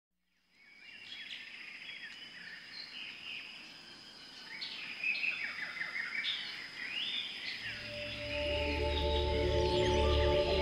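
Birds chirping in many short rising and falling calls over a steady high tone. From about eight seconds in, sustained ambient music fades in and grows louder.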